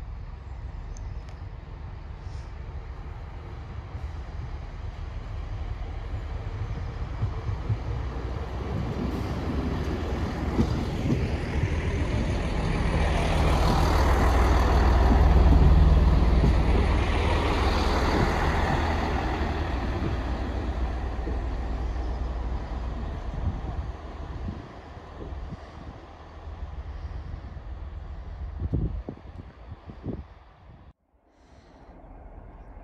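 Chiltern Railways Class 165 diesel multiple unit with underfloor diesel engines, its engine hum and wheel noise rising as it draws near. It is loudest about halfway through, then fades as it moves away.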